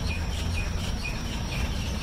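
Outdoor nature ambience: a steady high insect drone, a bird chirping in short notes about four or five times a second, and a low rumble underneath.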